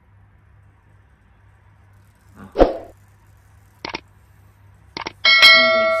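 Two short clicks, then near the end a bell-like chime of several steady ringing tones that slowly fade: a subscribe-button animation sound effect.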